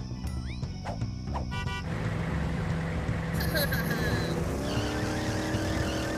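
Cartoon sound effect of a van's engine speeding up, with a tyre screech, its pitch rising through the second half, over action background music.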